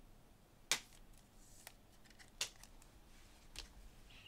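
Trading cards and a clear plastic card holder being handled: a few sharp plastic clicks and light snaps, the loudest under a second in, another about halfway through and a softer one near the end.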